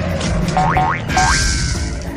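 Cartoon boing sound effects: two short rising, springy glides about half a second apart, over children's background music.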